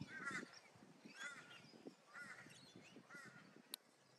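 A crow calling faintly, four short cawing calls about a second apart. A single sharp click near the end.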